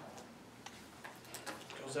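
Papers handled at a meeting table: a few light taps and rustles, faint and scattered, over a low room hum.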